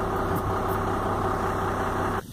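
A motor idling with a steady low hum at an unchanging pitch.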